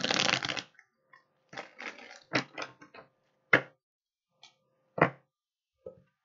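Tarot deck riffle-shuffled in one quick burst, then a run of short sharp slaps and taps as cards are drawn and laid down on a wooden table, the loudest about three and a half and five seconds in.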